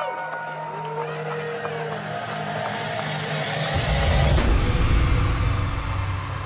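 Live concert recording with a noisy background and a short rising-and-falling voice about a second in. A deep rumble swells in about two thirds of the way through and stays to the end.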